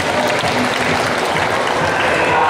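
Audience applauding: many hands clapping together at a steady level.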